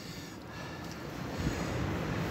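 Waves washing onto a shingle beach with wind noise on the microphone, a low gust rumble about one and a half seconds in.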